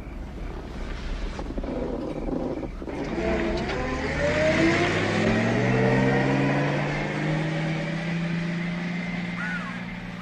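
Taxi cab's engine revving up and pulling away, its pitch climbing as it accelerates, loudest about halfway through and then easing off gradually.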